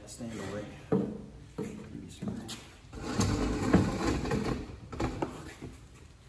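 Plastic spreader scraping and pressing wet resin into carbon fiber cloth on a wooden board, with a couple of sharp knocks, under indistinct voices.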